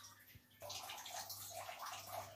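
Water bubbling and gurgling in a cooking pot. It jumps suddenly louder about half a second in, over a faint steady low hum.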